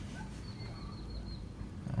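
Quiet background with faint, scattered bird calls from outside, over a low steady rumble.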